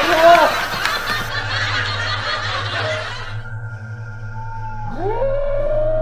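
Eerie horror sound effects: a short cry at the start and a rush of noise, then a low steady drone, and about five seconds in a long wailing tone that swoops up and holds.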